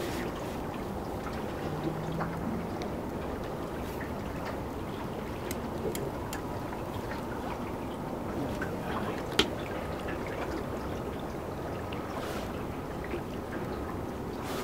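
Steady wash of river water around a small metal boat, with a few faint clicks and one sharper tick about nine seconds in.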